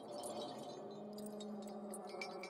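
Faint background sound bed: soft sustained tones with light chime-like tinkling scattered through it.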